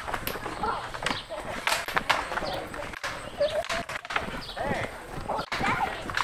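Distant voices of people talking, with scattered sharp clicks and knocks throughout.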